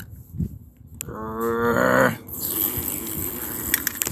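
A voice imitating a racing car engine with one drawn-out, slightly falling hum about a second in, lasting about a second. It is followed by a breathy rushing noise while the die-cast toy race car is pushed along the foam play mat.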